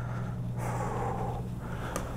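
A person breathing hard with effort: one long, soft breath about half a second in, lasting about a second, over a steady low hum.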